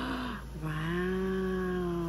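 A woman's sharp gasp, then a long drawn-out wordless "ooh" of delight held steady for nearly two seconds.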